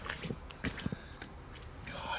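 A few soft, short taps and rustles from a large common carp being handled on a padded unhooking mat.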